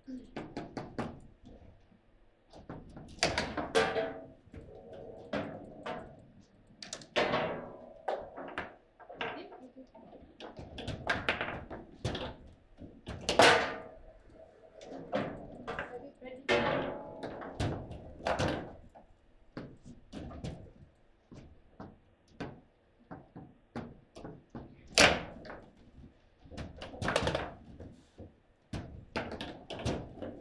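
Table football being played: the hard ball and the rod figures striking each other and the table walls, with the rods banging in their bearings, giving a series of sharp knocks and thunks at irregular intervals, two of them much louder than the rest.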